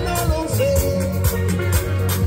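Live band music with a steady beat of about two strikes a second, a strong bass line and a singing voice carrying a melody.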